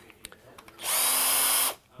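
Cordless battery drill running in one short burst of just under a second, run in reverse to open its chuck wide.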